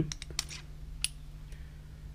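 Light clicks and taps of small metal parts being handled, as a short aluminium tube is fitted into a small metal bracket. A quick cluster of clicks comes in the first half second and a single click about a second in, over a faint steady low hum.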